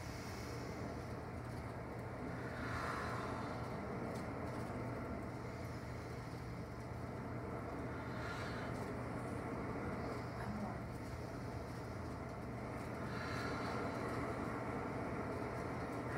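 People taking three slow, deep breaths together, each exhale a soft breathy rush about five seconds apart, over a steady low background hum.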